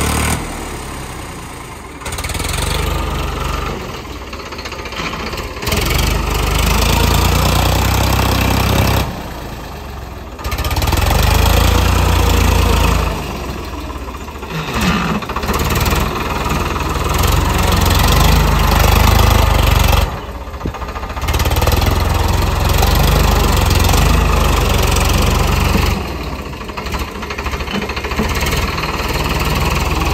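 Farmtrac 60 tractor's diesel engine running under load as it works over heaped soil, its loudness swelling and easing off several times as the throttle and load change.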